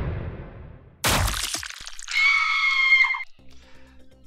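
News-show intro sting. A decaying hit fades out, a sharp crack comes about a second in, and then a bright held chord rings for about a second before cutting off. A faint low music bed comes in near the end.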